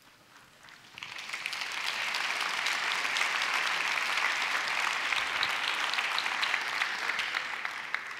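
Audience applauding. The clapping starts about a second in, holds steady, and fades near the end.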